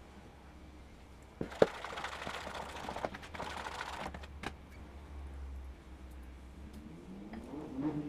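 A fork beating flour into oil and liquid in a plastic bowl. A sharp knock about a second and a half in is followed by about two and a half seconds of rapid scraping and clicking against the bowl, then a single tap and fainter stirring.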